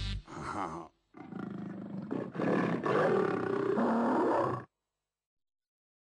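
A deep, rough vocal roar that grows louder about two seconds in and cuts off suddenly.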